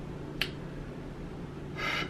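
A single sharp click about half a second in, over a faint steady low hum, then a man's inhale near the end just before he speaks.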